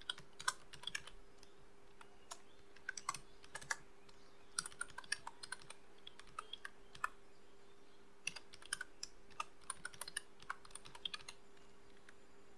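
Typing on a computer keyboard: irregular runs of key clicks with short pauses between them, over a faint steady hum.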